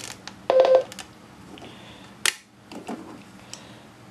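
Front-panel key beep of a TYT TH-9800 mobile ham radio as a button is pressed: one short steady beep about half a second in. A sharp click follows a little after two seconds.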